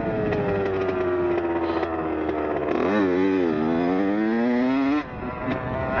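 Dirt bike engine running on the trail with the throttle eased, its pitch slowly sinking, then revved back up in the second half, rising steadily until the revs drop off abruptly about five seconds in.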